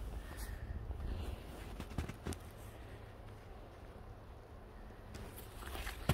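Faint footsteps crunching through snow, with a low rumble on the microphone and a few light clicks about two seconds in and again near the end.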